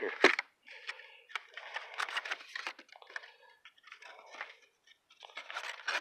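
A small cardboard box of business cards being opened and handled: paper and cardboard crinkling, tearing and rustling in irregular bursts, with a sharp click a moment in.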